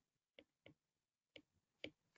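Near silence broken by four faint, separate clicks, made while handwriting on a digital whiteboard.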